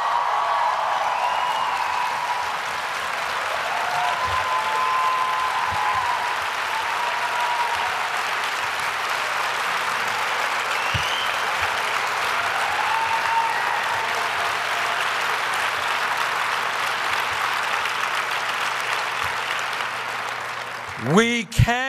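Large audience applauding steadily, with a few cheers rising above the clapping.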